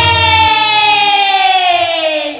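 A singer's long held note in a Chhattisgarhi Holi folk song, sliding slowly down in pitch, with the drums and bass dropping out about half a second in.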